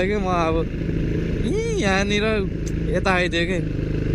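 Dirt bike engine running steadily while riding, with a man's voice talking over it in short bursts near the start, in the middle and a little after three seconds in.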